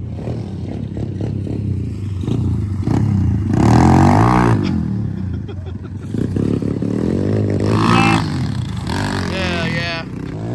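Small dirt bikes revving up and easing off as they ride past, loudest about four seconds in and again about eight seconds in.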